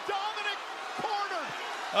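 Quieter speech, fainter than the hosts' talk around it, with no distinct non-speech sound standing out.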